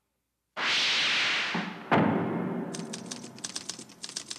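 Logo sound effects: a loud rushing whoosh that fades, a sudden heavy boom about two seconds in that rings down, then a quick irregular run of manual typewriter keystrokes.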